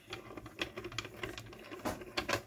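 Small hand-cranked die-cutting machine turning, with light, irregular clicking and ticking as the crank rotates and the acrylic cutting plates roll through the rollers.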